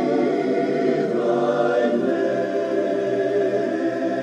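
Gospel music: a small group of backing voices singing held, wordless chords, shifting to a new chord about two seconds in.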